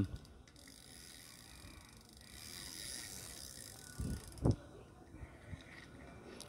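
Small Daiwa size-700 spinning fishing reel being cranked by hand: a faint, smooth whir of the rotor and gears, with two soft knocks about four seconds in and a few small clicks near the end. The reel is described as turning very smoothly, a sign of gears in good working order.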